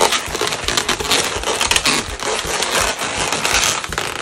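Inflated 260Q chrome latex balloons being pinched and twisted together by hand: latex rubbing on latex in a dense, irregular run of creaks and scrapes.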